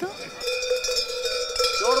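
Bells on the mummers' sheepskin costumes ringing together in a steady jangle. A voice starts calling out near the end.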